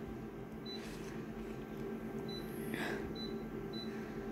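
Photocopier touchscreen giving four short high beeps as its settings are tapped, over the steady hum of the copier's fans running.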